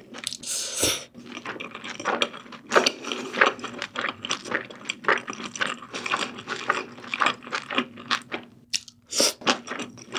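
Close-miked eating sounds: slurping of thin wheat noodles in spicy sauce near the start and again about nine seconds in, with chewing and many short wet mouth clicks in between.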